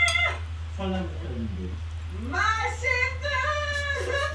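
Drawn-out, sing-song voices in Korean from the clip being played: a held call ending just after the start, a short falling phrase about a second in, then another long, wavering call to the end. A steady low hum runs underneath.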